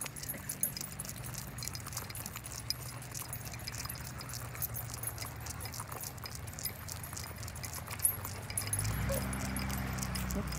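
Metal leash clips and collar tags jingling and clicking as several leashed dogs walk along, with light footsteps, over a low steady hum that grows louder near the end.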